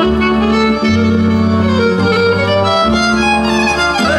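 Folk dance music led by a fiddle playing a quick melody over a bass line that changes note about once a second.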